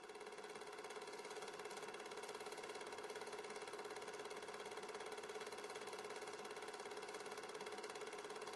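A steady mechanical drone with a fast, even pulse, like a running engine.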